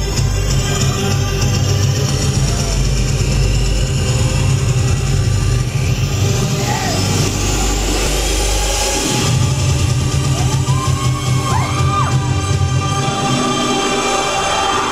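Live electronic dance music played loud through a venue's sound system from synthesizers and a laptop, with a heavy bass beat. A rising sweep builds to a short break about nine seconds in, where the bass drops out, then the bass comes back in.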